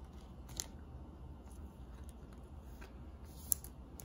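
A trading card being handled and slid into a soft plastic sleeve: faint plastic rustling with two short sharp clicks, about half a second in and near the end.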